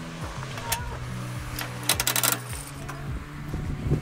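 A coin-operated fish-food dispenser's metal mechanism clicking and rattling in a quick burst about two seconds in, after one single click just before, as a quarter goes in and the knob is turned. Background music with held low notes runs under it.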